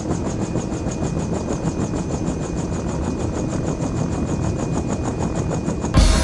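A motor running steadily, with a fast, even pulse of about ten beats a second and a faint steady whine. It starts and stops abruptly between stretches of music.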